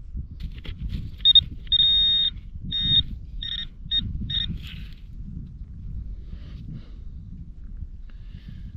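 Handheld metal-detecting pinpointer beeping as it is pushed into loose soil: one long high beep, then short beeps about twice a second, signalling a metal target close to the probe. Underneath, soil and stubble rustle as it is handled.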